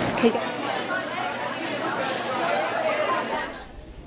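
Indistinct chatter of many voices talking at once, with no single voice standing out. It dies away shortly before the end.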